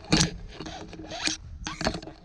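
Tandem paraglider lines, wing fabric and harness gear rubbing and scraping, in several short rustling strokes.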